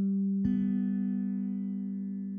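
Background music: a low plucked guitar note ringing, with a fresh note struck about half a second in and slowly fading.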